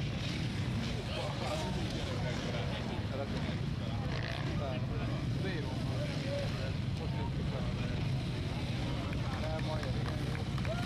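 Enduro motorcycle engines running steadily at low revs, with a crowd of spectators talking over them.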